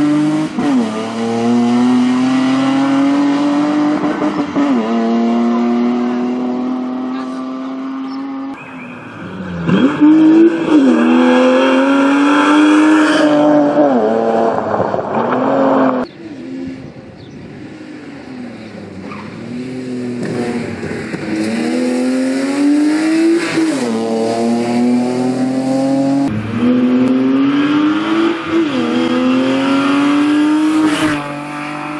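BMW E36 320i rally car's straight-six engine at high revs, its pitch climbing and dropping back with each upshift as it accelerates hard. About halfway through the sound cuts off suddenly. It returns fainter and grows louder as the car approaches, again rising through several upshifts.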